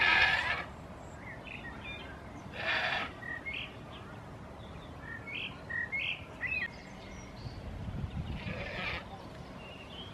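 Goats bleating three times, the first call the loudest, the others about two and a half and eight and a half seconds in. Short bird chirps come between the calls.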